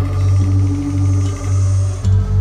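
Live band music in an instrumental stretch without vocals: a heavy, sustained bass with a steady held note above it, dipping briefly twice.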